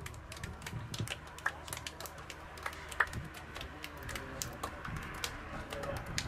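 Hands slapping together as footballers shake hands in a line: a run of irregular sharp slaps and claps, the loudest about three seconds in.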